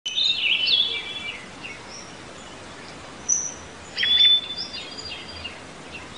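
Wild birds chirping and singing over a steady outdoor background hiss: a burst of quick calls in the first second, a held whistled note with chirps about four seconds in, and scattered chirps in between.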